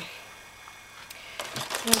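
Quiet room, then about one and a half seconds in a few light clicks and a sharp knock from a clear plastic jar of small toys being taken off a shelf.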